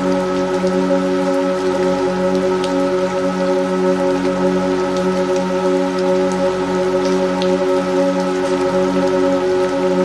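Steady rain with scattered distinct drops, mixed under a sustained drone of several held tones that never change pitch, as in a binaural-beat relaxation track.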